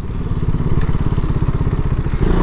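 Motorcycle engine running at low road speed, its rapid, even firing pulses getting gradually louder.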